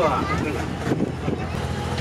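Engine of a small tourist train running with a steady low hum, heard from inside its open wooden carriage.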